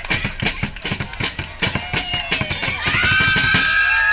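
Supporters' drums beating a fast, even rhythm, about five beats a second, under a cheering, chanting crowd. Long held notes come in about three seconds in.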